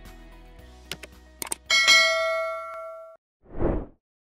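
Subscribe-button sound effect: a few quick mouse clicks, then a bright notification bell ding that rings out for over a second. Near the end comes a short whoosh for the transition, over faint background music that fades away.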